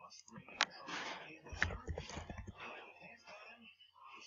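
A few sharp computer keyboard and mouse clicks under a soft, breathy murmur of voice.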